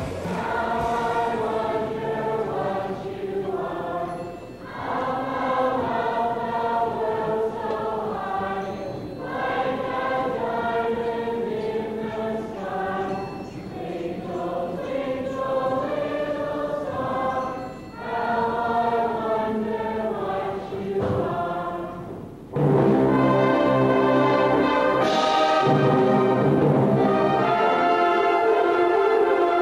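A choir singing in several parts, in phrases with short breaths between them. About 22 seconds in it is cut off abruptly by louder instrumental music.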